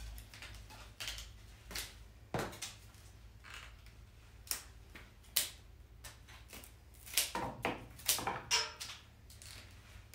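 Florist's scissors snipping through a bundle of green flower stems, a crisp snap with each cut. About ten cuts come at uneven intervals, several in quick succession a little after the middle and toward the end.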